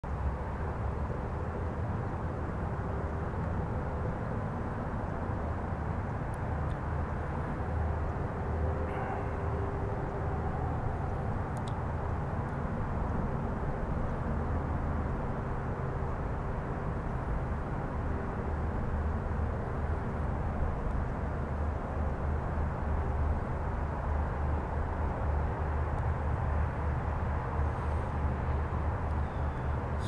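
Steady low outdoor background rumble with no distinct events, and a faint hum through the first half.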